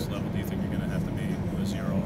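Faint voices of the surrounding crowd of reporters over a steady low hum.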